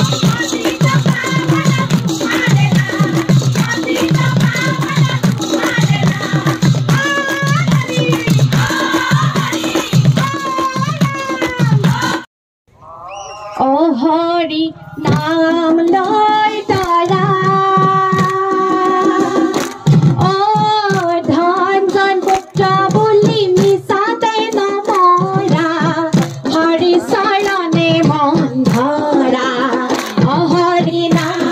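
A group of women singing a devotional song with rhythmic hand clapping. About twelve seconds in the sound drops out briefly, then the singing resumes with long held notes.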